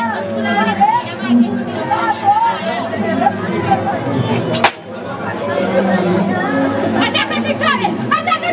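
Several people talking and calling out over one another, with a single sharp click about four and a half seconds in.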